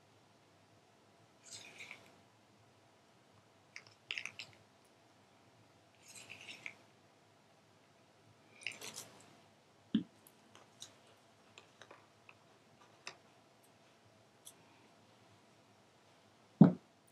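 A stir stick faintly scraping around the inside of a small plastic cup of thick paint and pouring medium, in soft strokes about every two seconds. About ten seconds in comes one sharp knock, then a few lighter taps.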